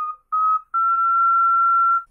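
Pendant ocarina playing the top of a rising chromatic run, with C sharp and E flat half-holed. Two short notes, each a step higher, then one long held note.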